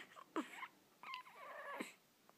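Infant cooing: a couple of short coos, then a longer one with a wavering pitch that stops shortly before the end.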